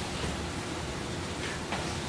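Steady hiss of auditorium room noise.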